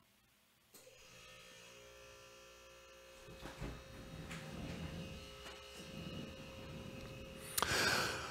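Faint electrical hum and whine made of several steady tones, coming in about a second in and growing louder partway through, with a short louder noise near the end.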